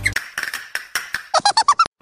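Cartoon-style squeak sound effect: a quick run of clicks, then about six short high squeaks in fast succession that cut off abruptly.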